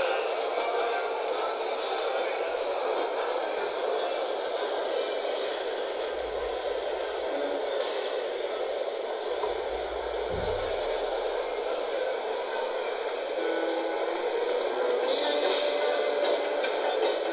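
Steady, muffled din of a large competition hall, recorded at low fidelity, with a brief low thump about ten seconds in.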